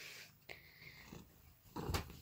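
Domestic cat making a faint, short, low vocal sound near the end, otherwise quiet.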